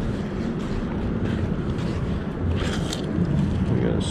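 Steady low outdoor rumble, with no distinct knocks or splashes standing out.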